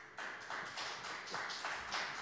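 Audience applause starting a moment in and building up, with separate claps heard rather than a dense roar.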